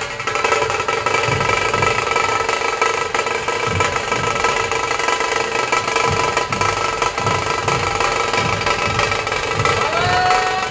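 Large dhol barrel drums of a Maharashtrian procession drum troupe beaten together in a loud, driving rhythm. Steady held pitched tones sound over the drums throughout.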